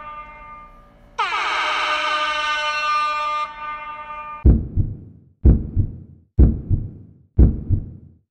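Edited-in dramatic sound effects. A loud horn-like stinger blast swoops down into a held chord about a second in. Then come four deep booming hits, one a second, like a countdown.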